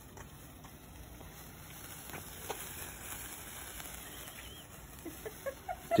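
Faint fizzing crackle of a burning handheld sparkler, growing a little as it comes close, over quiet night-time outdoor ambience.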